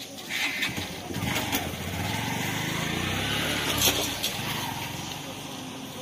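An engine rumble that builds over a couple of seconds, peaks a little before the four-second mark and fades away, with voices in the background.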